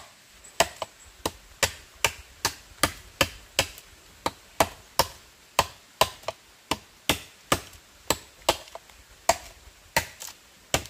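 Machete blade chopping into a green bamboo culm, cutting a notch in it: steady, evenly spaced strokes about two to three a second, each a sharp crisp chop.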